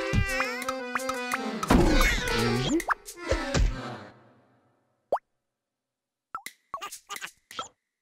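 Playful cartoon music with bouncy plop sound effects, fading out about four seconds in. Then near silence, broken by a single click and a few short, separate blips near the end.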